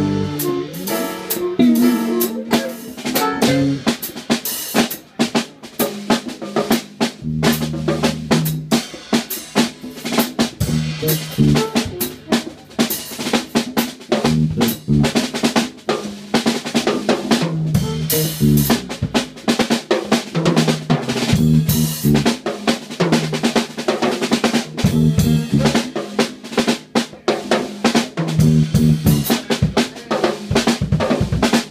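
Jazz drum kit played solo: rapid snare strokes, rimshots and rolls over bass drum. Low notes ring out every few seconds between the hits.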